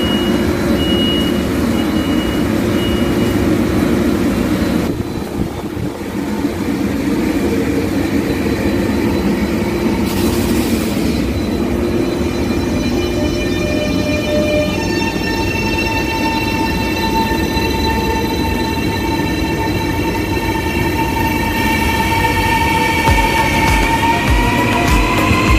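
KLIA Transit electric train at a station platform with a steady running hum. Partway through, a set of electric whines sets in, and near the end they begin to rise in pitch as the train starts to pull away. A short repeated high beep sounds in the first few seconds.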